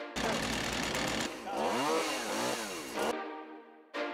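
A chainsaw running, its pitch rising and falling several times as it is revved in the cut. It stops suddenly about three seconds in.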